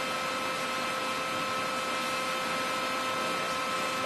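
Steady hum and hiss of a powered-up Okamoto IGM-15NC CNC internal grinder, with several steady tones and no change in level. No separate sound of the axis movement stands out.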